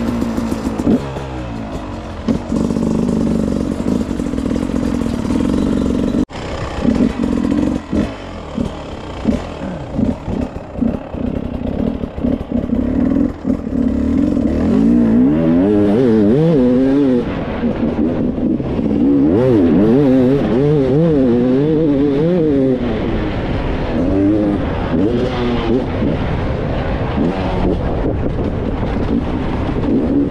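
Enduro motorcycle engine heard from the rider's own bike while riding off-road. It runs at lower revs with many knocks and clatters over rough ground early on, then from about halfway revs up and down repeatedly as the throttle is worked.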